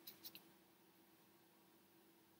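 Near silence: room tone with a faint steady hum, and a few faint small clicks in the first half-second.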